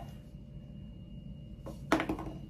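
Quiet room tone with a faint steady high whine, then a short sharp click near the end.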